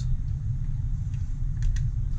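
Steady low background rumble, with a few faint light clicks from plastic blaster parts being handled.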